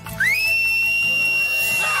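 A loud, single whistled note. It slides up at the start and then holds one steady pitch, over soft background music.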